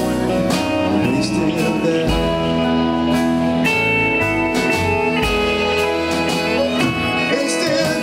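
Live folk-rock band playing an instrumental passage: strummed acoustic guitar and electric guitar over drums, with long held lead notes on top.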